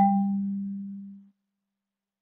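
A concert marimba bar struck once with a yarn mallet, the upper note of an ascending whole step, ringing with a low, round tone that dies away within about a second and a half. Silence follows.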